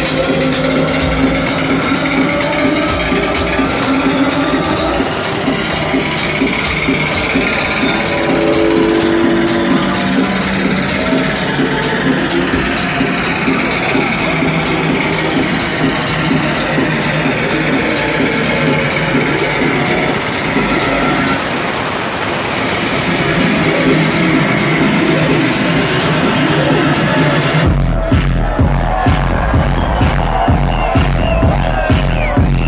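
Loud electronic dance music from a club sound system, heard through a phone's microphone. A breakdown with slow sweeping effects and fast dense percussion runs without much bass. The bass and a steady kick drum come back in about two seconds before the end, with the top end muffled.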